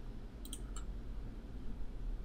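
A few faint clicks in quick succession about half a second in, from a computer mouse or keyboard being worked, over a low steady hum.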